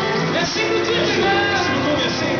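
Live country band playing a rock-and-roll song, with guitars, fiddle and drums together.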